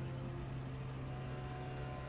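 A steady low drone with a faint hiss over it, from the anime episode's magic-attack scene.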